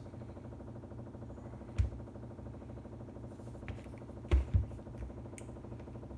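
Handling of a gimbal tripod head's metal parts as a knob is spun off by hand: a few light clicks and knocks, two of them close together about four and a half seconds in.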